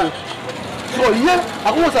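A man's voice speaking over a steady wash of street noise, which is heard alone for about the first second before the speech starts.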